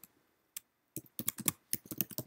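Computer keyboard typing: a single keystroke about half a second in, then a quick run of keystrokes through the second half.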